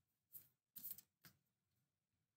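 Near silence, broken by a few faint, short clicks of a deck of tarot cards being handled.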